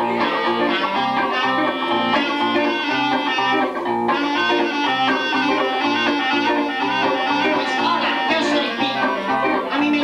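Live band music: a clarinet plays a melody over an electric guitar, with an even, bouncing low beat throughout.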